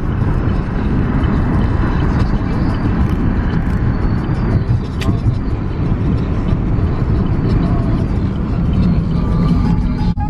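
Steady road and engine noise inside a moving car's cabin: a continuous low rumble from the tyres and the engine while driving at speed.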